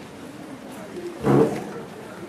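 A single short, low vocal sound from a person about a second and a quarter in, over a steady low background hum of the hall.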